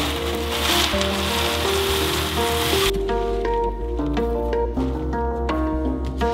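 Background music with melodic notes and a steady low beat. Over it, for about the first three seconds, small round drainage pellets pour out of a plastic bag into an empty enclosure with a dense rushing rattle that stops abruptly.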